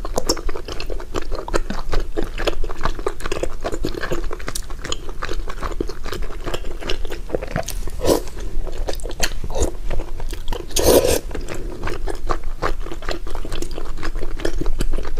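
Close-miked chewing of soft, sticky food, with dense wet mouth clicks and smacks and a couple of louder slurps, the loudest about eleven seconds in.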